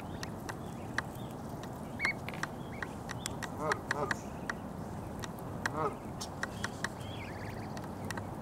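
Canada geese and their goslings grazing at close range. There are many short sharp clicks of beaks plucking grass and a few thin high peeps from the goslings. Twice, around four seconds in and again near six seconds, comes a quick run of short low calls from a goose.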